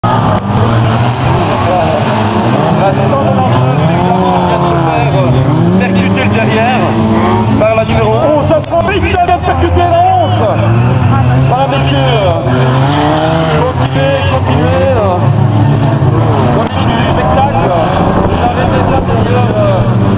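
Several old hatchback rodeo cars racing on a dirt track. Their engines rev up and down over one another throughout.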